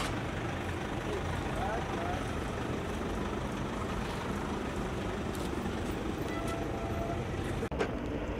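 Steady outdoor noise of idling and slowly moving car engines, with faint voices in the background, briefly cutting out near the end.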